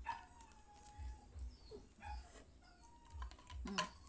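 Faint, thin high-pitched whining in a few drawn-out notes, with soft low knocks.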